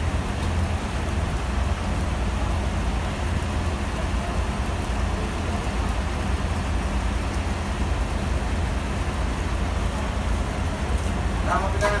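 Steady rain falling on wet pavement, over a constant low rumble.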